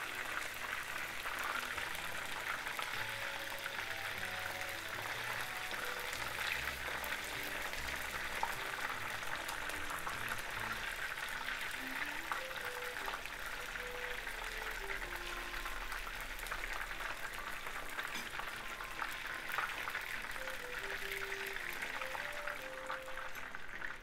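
Chicken tempura deep-frying in vegetable oil in a frying pan: a steady sizzle of many small crackles and pops. A soft background melody plays over it.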